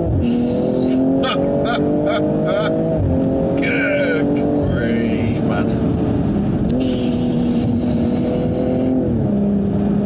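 BMW M240i's B58 turbocharged straight-six heard from inside the cabin while driven hard, its pitch dropping sharply at gear changes just as it starts and several times after, and rising once about seven seconds in.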